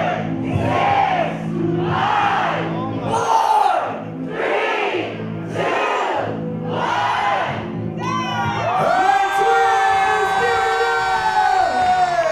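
Audience chanting a countdown in unison, about one shouted number a second, over the DJ's music with a steady bass. About nine seconds in, the counting gives way to one long held shout.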